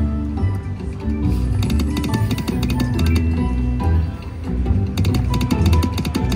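Slot machine's game music and sound effects during base-game spins: a looping electronic tune with a low repeating beat, short chiming tones and many sharp clicks as the reels spin and stop.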